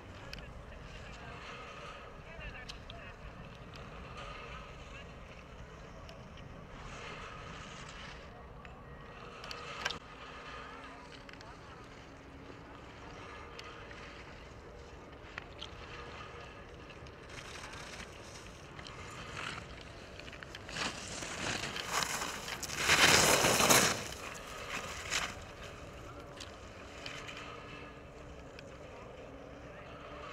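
Ski edges scraping and hissing on hard snow as giant slalom racers carve turns through the gates. The loudest part is a hiss of about three seconds a little past two-thirds of the way in.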